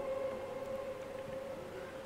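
Faint steady drone of background music: a held tone with a fainter higher one above it, unchanging throughout.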